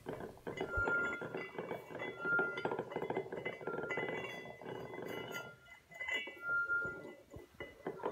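Drinking glasses and kitchenware clinking with many quick light knocks, with glass ringing out in short clear tones several times.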